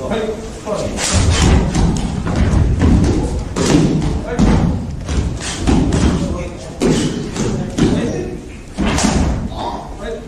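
Bodies hitting a gym mat in a string of heavy thuds as karate students are thrown or fall during a martial-arts demonstration, with voices in between.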